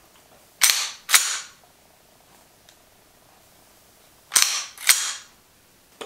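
A 1911 pistol's slide being racked twice: each rack is a pair of sharp metallic clacks about half a second apart, and the second rack comes about four seconds after the first.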